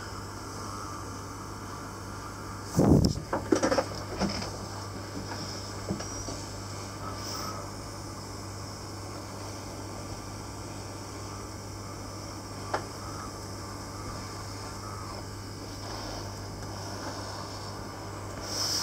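Steady low electrical hum of a running PCB preheater, broken by a cluster of handling knocks about three seconds in and a single sharp click near the 13-second mark.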